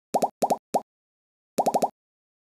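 A series of short, bright pop sound effects, each dropping quickly in pitch. There are two pairs and a single pop in the first second, then four pops in quick succession near the end.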